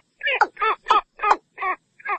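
Watercock calling: a rapid series of short, nasal, harmonic notes repeated about three times a second.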